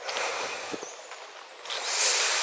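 A walker's breathing close to the microphone: a long breathy exhale at the start and another beginning near the end.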